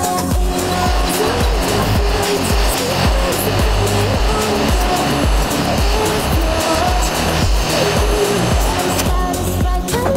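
Hot air rework gun blowing steadily onto a phone logic board to loosen a soldered shield can. The airflow stops shortly before the end, over background music with a steady beat.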